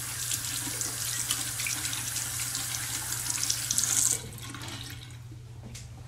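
Tap water running into a bathroom sink as hands are washed, shut off suddenly about four seconds in. A few faint clicks and rustles follow.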